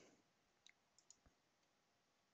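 Near silence, with a few faint clicks about a second in, from a computer mouse as the document is scrolled.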